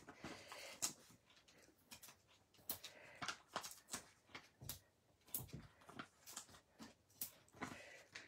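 Faint, irregular light ticks and paper rustles as adhesive foam dimensionals are peeled from their backing sheet and pressed onto a cardstock panel.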